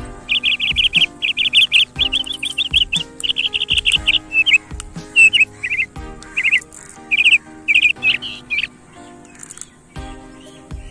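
A bird chirping loudly in quick repeated trills, almost continuous for the first few seconds and then in shorter separate phrases that stop about a second before the end, over steady background music.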